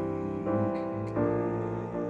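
Piano being improvised in slow sustained chords: a new chord is struck three times, each ringing on and fading under the next.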